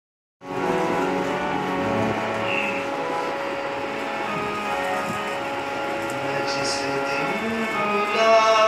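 Harmonium playing alone, a slow introduction of held notes and chords that begins about half a second in, with no tabla yet.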